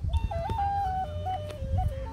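A flute playing a slow melody of held notes that step up and down, drifting mostly downward in pitch, with a low rumble on the microphone underneath.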